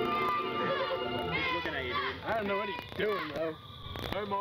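Music with held notes, giving way about a second and a half in to high-pitched voices whose pitch swoops up and down.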